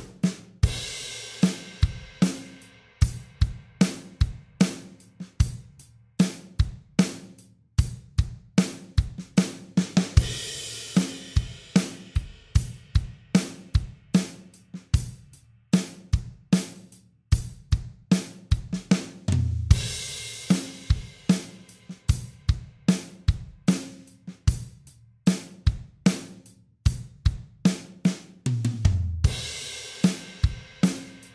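Acoustic drum kit playing a steady 3/4 groove at 75 beats per minute on kick, snare and hi-hat. A cymbal crash comes about every ten seconds, and short low drum fills lead into the crashes near the end.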